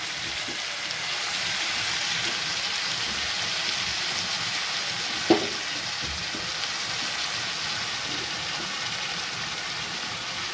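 Onions, tomatoes and peas sizzling in oil in an iron kadhai: a steady frying hiss that grows a little louder about a second in as the potato pieces go into the pan, with one brief pitched blip about five seconds in.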